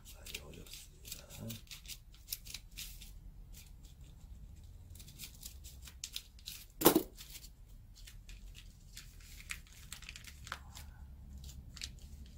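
Scissors snipping through paper, cutting out the paper skirt of a shaman's spirit staff in short, irregular cuts, with one louder knock about seven seconds in.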